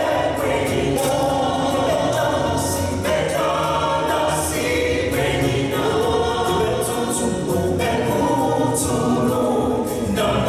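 A small mixed group of men's and women's voices singing a gospel song in harmony, holding notes and moving through chord changes.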